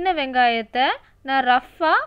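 A woman speaking, with short pauses between phrases; no other sound stands out.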